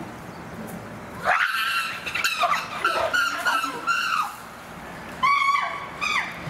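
Chimpanzees giving a run of loud, high-pitched calls, several in quick succession, then one more near the end.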